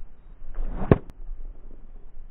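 Golf iron swishing through the downswing, rising to one sharp strike on the ball and turf just under a second in.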